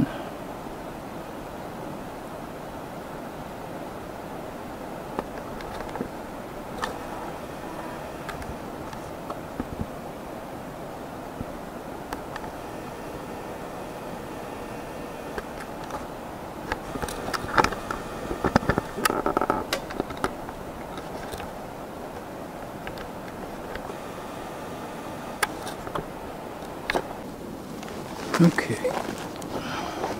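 Handling noise from a camera rig being moved and re-aimed: scattered clicks and knocks over a steady background hiss, with a burst of bumps and rubbing about two-thirds of the way through.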